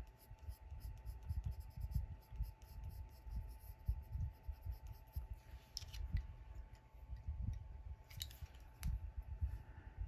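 Colored pencil strokes on paper: a Prismacolor Premier pencil lead rubbing in quick, irregular short scratches while shading. A couple of brief sharper clicks or scrapes come around the sixth and eighth seconds.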